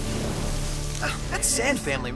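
Cartoon soundtrack: a steady rain-like hiss over low held music tones, then a man's voice begins about halfway through, with a short sharp hiss near the end.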